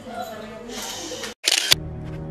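Indistinct voices for over a second, then a sudden cut and a short, loud burst of noise, after which background music starts near the end.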